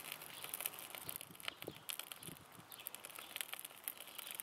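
Wood fire crackling in a steel fire pit as the kindling and split logs catch: faint, irregular small pops and ticks over a soft hiss.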